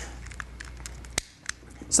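Quiet handling noises as a propane torch is picked up and its valve fingered before lighting, with two sharp clicks a little over a second in.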